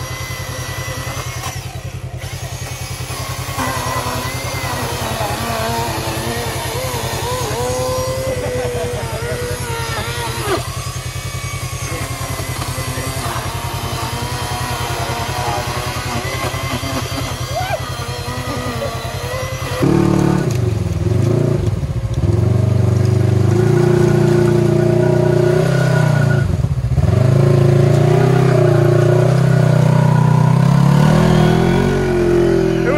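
A cordless electric chainsaw cuts through a waterlogged log, its motor pitch wavering as the chain loads in the wood. About two-thirds of the way in it gives way to a louder side-by-side UTV engine revving hard in deep mud and water, with two sharp drops in revs.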